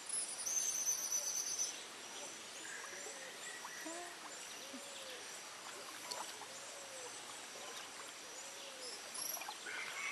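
Forest ambience: a steady high insect buzz, with a loud, rapid high-pitched trill in the first second or two. After that a soft low call that rises and falls repeats every second or so.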